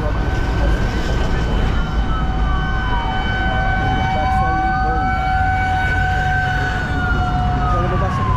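An emergency-vehicle siren wailing slowly: its pitch falls, climbs back over a few seconds and falls again near the end. It sounds over a steady held tone and a low rumble of road traffic.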